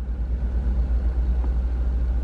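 A car running, heard from inside the cabin as a steady low rumble.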